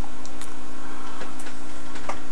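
A steady low hum with a few faint, irregularly spaced clicks.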